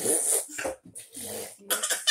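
Breathy, cough-like vocal noises from a person, in short bursts with brief pauses between them.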